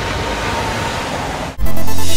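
A steady rushing noise, then loud dubstep-style electronic music with a heavy bass starts suddenly about one and a half seconds in.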